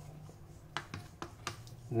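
A kitchen knife clicking and tapping against a plastic cutting board, about five short sharp clicks starting about a second in, as the cut through a raw chicken breast is finished and the knife is set down on the board.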